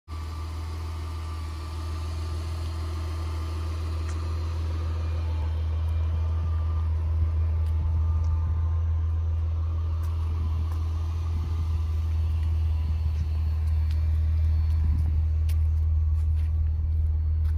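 A steady low rumble that grows slowly louder, with a few faint light clicks in the second half.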